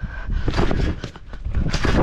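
Thumps and rustling of a rider bouncing on a trampoline with a trick scooter, with rushing noise on a body-worn action camera as he spins through a trick. A louder burst of noise comes near the end.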